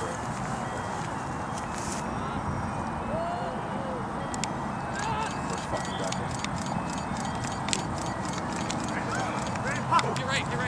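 Open-air ambience at a rugby match: a steady rushing background noise with faint, distant shouts from players and onlookers, and a few faint clicks in the middle.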